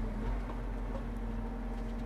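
Valtra tractor's engine running, heard inside the cab as a steady low hum.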